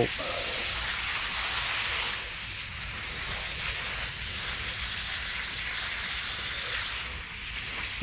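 Garden hose spray nozzle showering water onto grass: a steady hiss that softens slightly about two seconds in and again near the end.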